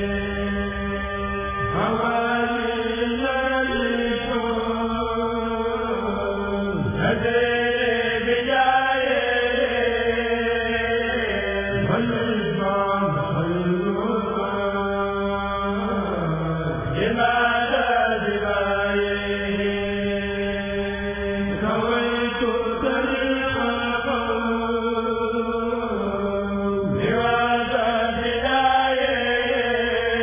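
A kurel, a choir of men's voices, chanting a Sufi qasida together in long held notes, the phrases breaking and starting anew about every five seconds.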